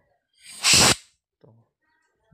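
A short blast of compressed air from a compressor's air gun, about half a second long and starting about half a second in, blowing dirt off a scooter's ACG starter-generator stator coils.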